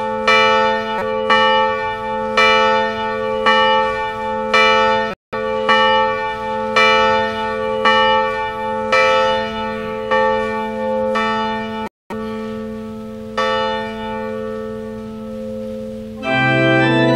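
A single church bell tolling, struck about once a second with the same pitch each time, each stroke ringing on into the next. The strokes stop a little past three-quarters of the way through and the ring dies away.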